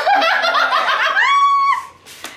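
Women laughing loudly in quick bursts, breaking into a high, held squeal near the end.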